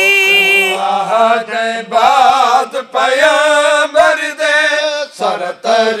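Young male reciter singing a noha, the Shia lament, unaccompanied into a microphone. A long held high note gives way to wavering, ornamented phrases, and a lower voice joins beneath about a second in.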